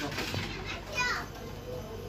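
Children's voices, with one child's high-pitched call about a second in.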